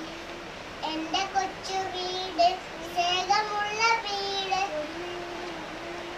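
A young girl singing a song unaccompanied, in phrases with long held notes.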